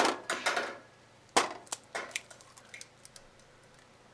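An egg being tapped against the rim of a bowl and cracked open: a few quick taps at the start, one sharp crack about a second and a half in, then small clicks of shell as it is pulled apart.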